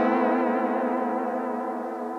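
Electric guitar, a Stratocaster-style instrument, ringing out on one held strum through a vibrato effect, its pitch wavering steadily up and down as it slowly fades.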